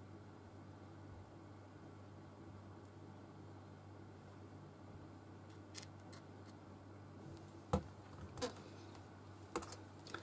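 Quiet steady room hum, then a few sharp light clicks and taps in the last few seconds from a plastic squeeze bottle and a papercraft card being handled on a cutting mat, the bottle set down near the end.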